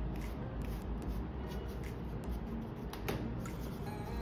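Flat bristle paintbrush dry-brushing paint onto a textured polyester (resin) casting with light dabbing strokes: a soft scratchy brushing with a few small taps.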